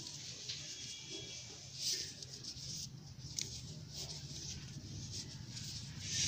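Faint rustling of cloth strips and light clicks of knitting needles as stitches of a rag door mat are worked, over a low steady hum.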